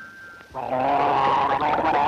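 Cartoon sound effect of an octopus's bubbly, gargling laugh, starting about half a second in.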